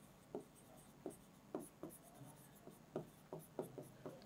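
Faint, irregular ticks and short scratches of a pen writing on a board, about a dozen strokes, quick and unevenly spaced.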